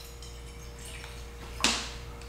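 Water poured from a plastic bottle into a stainless steel cooking pot, running faintly, with one brief louder splash about one and a half seconds in.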